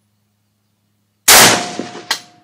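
A single rifle shot about a second in from a Century Arms GP WASR-10, an AK-pattern rifle in 7.62x39mm: a sharp, very loud crack with a long echoing tail.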